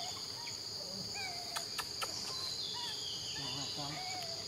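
Steady, high-pitched chorus of insects buzzing without pause, with short chirping calls coming and going over it. Three sharp clicks fall in quick succession about halfway through.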